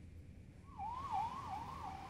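Faint siren in the background, its pitch dipping and swinging back up rapidly, about three times a second, starting about half a second in.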